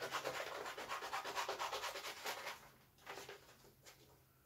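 Scissors cutting through a sheet of paper in a quick, even run of crisp snips. The snipping stops about two and a half seconds in, followed by a few fainter snips and paper rustling.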